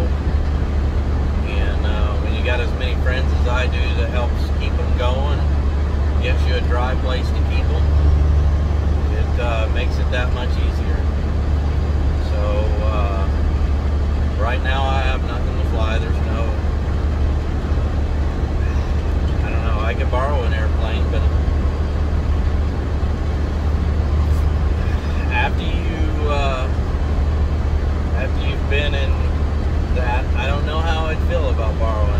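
Steady low drone of a truck's engine inside the cab, under a man talking.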